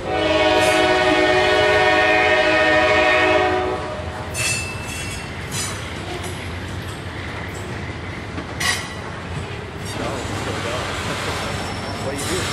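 A locomotive air horn sounds one steady blast of about four seconds. Over it and after it, the freight cars of a passing train roll by with a steady rumble and a few sharp clanks.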